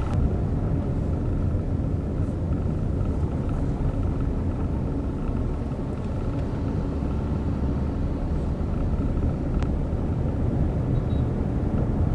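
Steady low rumble of a car driving, heard from inside the cabin: engine and road noise, with one faint click about nine and a half seconds in.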